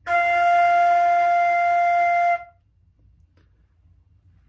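A concert flute playing a single held F, the F on the treble staff's top line, sustained steadily for about two and a half seconds and then released.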